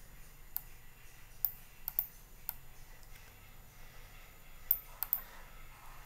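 Computer mouse clicking: several short, sharp clicks at irregular intervals, including a quick pair about two seconds in and a cluster near the end, as a design element is selected and resized.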